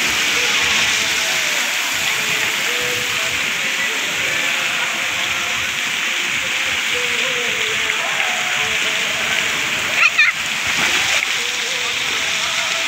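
Steady rush of water pouring and spraying from a children's water-play structure into a shallow pool, with faint children's voices underneath and a brief high squeal about ten seconds in.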